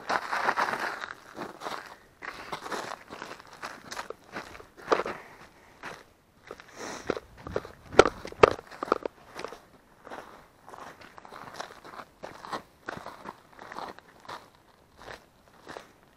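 Footsteps crunching irregularly over dry ground, with one sharper knock about eight seconds in.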